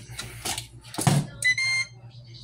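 A Ninja Foodi indoor grill is handled with a few knocks as its hood is shut. Its control panel then gives one steady electronic beep, about half a second long, roughly a second and a half in, as it starts heating to 500 degrees.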